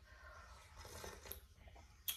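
Near silence, with faint blowing and sipping at a mug of hot coffee.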